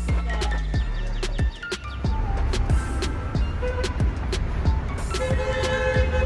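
Background music with a steady beat, sustained bass and melodic notes.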